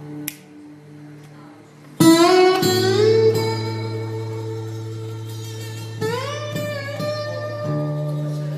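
Background music on guitar: quiet held notes, then loud plucked notes about two seconds in that slide upward in pitch, with another upward slide about six seconds in.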